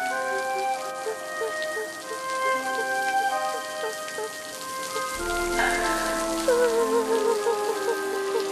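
Steady rain falling, under background music of long held notes.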